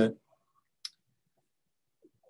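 The end of a man's spoken word, then a pause broken by a single short click about a second in.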